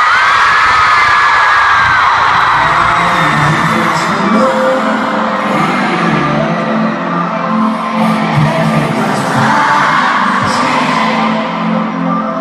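An arena pop concert heard from within the audience. Fans scream and cheer loudly, with high screams strongest in the first couple of seconds. Then a song's intro comes in over the PA with steady held low notes, and the crowd keeps cheering over it.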